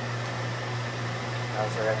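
Steady low hum with an even hiss of background machinery or air handling, unchanging throughout, with a man's voice starting near the end.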